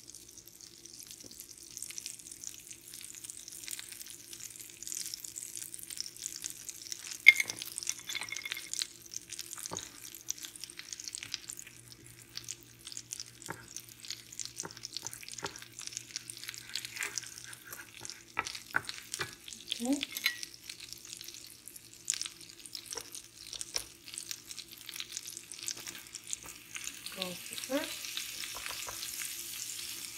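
Butter melting and sizzling in a nonstick frying pan, the first stage of a roux, with a steady crackle. A wooden spoon stirs it, with scattered clicks and scrapes and one sharp knock about seven seconds in.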